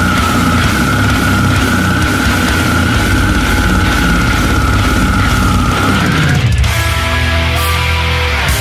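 Slamming deathcore with heavily distorted, down-tuned guitars and drums. One long held high note sits over the riff and ends about six seconds in, where the riff changes.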